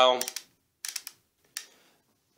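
Detent clicks of a DSLR's main dial being turned to step the shutter speed toward longer exposures: a quick cluster of clicks about a second in and one more click near the end.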